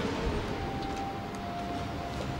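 Central London street noise: a steady wash of traffic with low rumble and a few faint clicks, and a faint steady tone coming in about half a second in.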